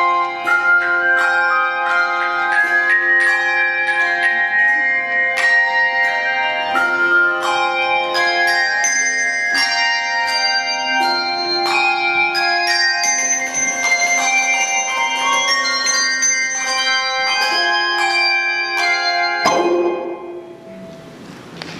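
Handbell choir playing a piece: many handbells struck in melody and chords, each tone ringing on after it is struck. The piece ends on a final struck chord just before the end.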